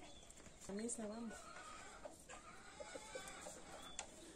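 Chickens clucking faintly, with a short wavering call about a second in and softer calls after it.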